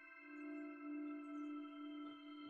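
Faint ambient background music of sustained, layered ringing tones. A low tone swells from about a quarter second in, is loudest around the middle and eases off near the end.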